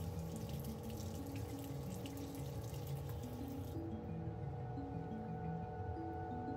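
Bathroom sink faucet running, the water stream splashing into the basin as a paintbrush is rinsed under it; the water cuts off suddenly about four seconds in.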